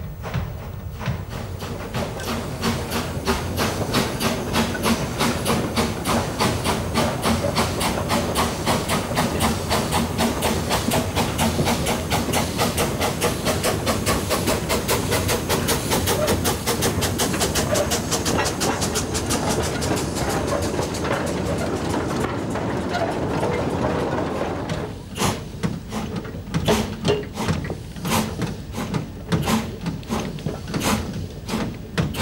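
Small narrow-gauge steam tank locomotive working under load: quick, even exhaust beats over a steady hiss of steam from open cylinder drain cocks. A few seconds before the end the beats thin out into fewer, sharper strikes.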